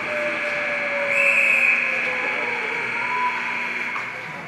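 A steady high-pitched tone held for about four seconds, swelling briefly about a second in, over arena background noise.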